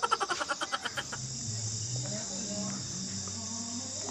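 A person's laughter trailing off over the first second. Under it and after it, a steady high chirring of crickets carries on, with a faint low hum.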